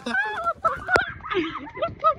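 Young women's voices whooping and squealing in high, wavering calls, without clear words. A single sharp knock comes about a second in.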